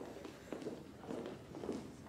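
Faint footsteps and shuffling on a stage, with a low, irregular murmur of voices.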